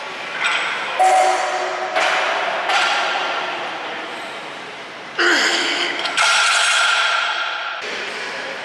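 Barbell loaded to 495 lb being deadlifted for a set of two: a series of sudden metallic clanks, each ringing on as it fades, as the bar and plates rattle and touch down, the loudest about five and six seconds in.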